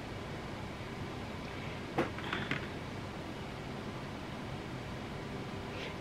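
Quiet room tone with a steady low hum, broken once by a single light click about two seconds in.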